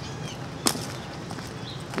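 Low outdoor background with one sharp click about a third of the way in and a faint, brief high chirp near the end.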